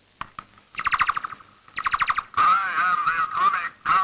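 A battery-operated toy robot: a few clicks, then two short buzzing electronic beeps and a longer warbling, siren-like tone.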